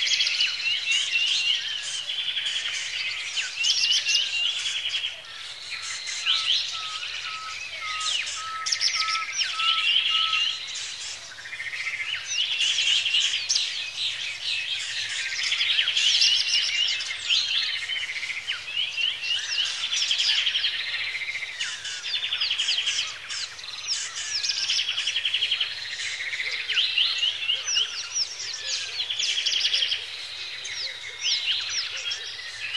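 Several songbirds singing and chirping over one another without a break. From about six to ten seconds in there is a run of about nine evenly spaced, lower piping notes.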